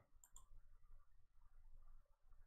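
A few faint computer mouse clicks close together about half a second in, picking the daily setting from a chart's timeframe menu. The rest is near silence.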